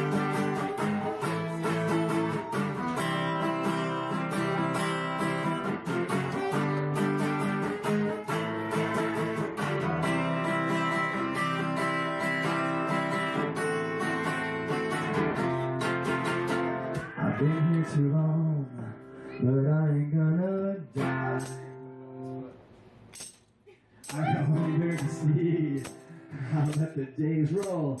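Acoustic guitar strummed in sustained chords. Later the playing thins to separate notes with a short, almost silent pause before it picks up again.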